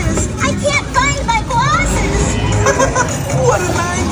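Overlapping voices and music from a dark ride's soundtrack, over the steady low rumble of the moving ride car.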